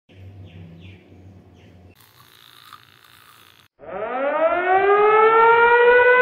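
A loud siren sound effect winding up in pitch and levelling off, starting about four seconds in. Before it comes a faint low hum with a few faint chirps, then a brief hiss.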